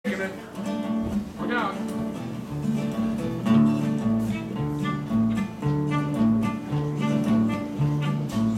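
Instrumental intro of an upbeat folk tune on acoustic guitar, acoustic bass and fiddle: the guitar strums a steady rhythm while the bass steps back and forth between two notes, with a sliding fiddle phrase about a second and a half in.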